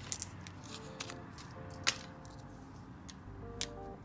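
Soft background music under a few small sharp metallic clicks, the loudest about two seconds in and again near the end, as small stem-cap parts and bolts are handled at the bike's stem.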